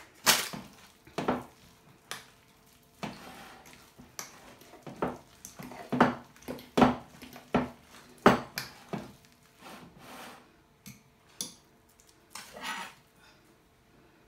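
A metal utensil knocking and scraping against a glass bowl in irregular strokes while butter is worked into mashed potatoes, the strokes thinning out near the end.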